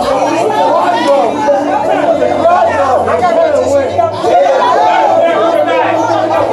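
Several people's voices overlapping, loud chatter with many talking at once.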